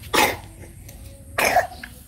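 Two short, hoarse coughs, one near the start and one about a second and a quarter later.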